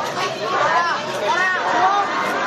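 Chatter of several young people's voices among a marching crowd, overlapping over a steady background hubbub.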